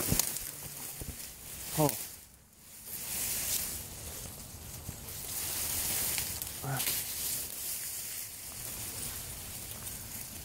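Tall grass and reeds rustling and brushing against the camera as someone pushes through the vegetation. Two short pitched sounds break in, one a little under two seconds in (the loudest moment) and another near seven seconds.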